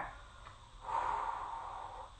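A woman's breath, a breathy exhale of about a second starting partway in, as she holds a rounded Pilates ab position.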